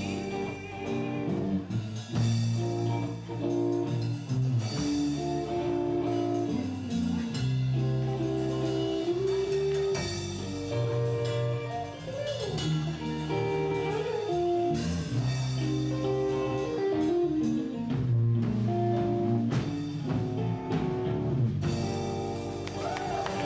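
Live rock band playing, led by electric guitars over a Yamaha drum kit.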